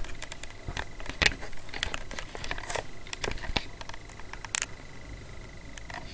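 Irregular rustling and clicking handling noises, with a sharper burst about four and a half seconds in, over a faint steady high whine.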